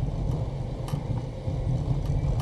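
A car driving slowly, heard from inside the cabin: a steady low rumble of engine and tyre noise, with a faint tick about a second in.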